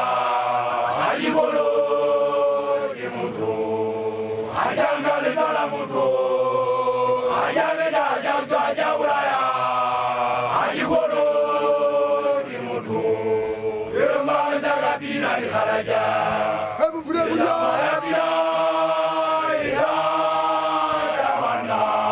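Unaccompanied group of male voices chanting together: Basotho makoloane (newly initiated young men) singing in repeated held phrases that slide down in pitch at their ends.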